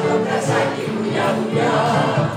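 Mixed choir of men and women singing a popular Greek song together, accompanied by an electronic keyboard.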